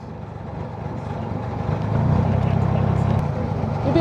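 Narrowboat diesel engine running with a steady low hum, growing louder about two seconds in.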